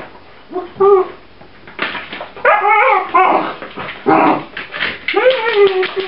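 Pups whining and yipping as they tussle over a plastic laundry basket: several short wavering cries, then a longer whine that falls and holds near the end. Sharp clicks and knocks from claws and the basket on the tile floor.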